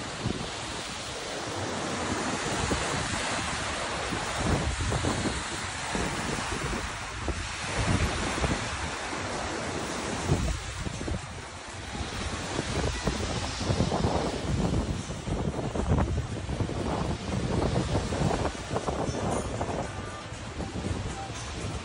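Wind buffeting the microphone in irregular low gusts over a steady rush of surf.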